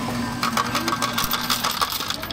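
Coin-operated fruit slot machine paying out a win: the coin hopper's motor runs with a steady hum and coins clatter rapidly into the metal payout tray.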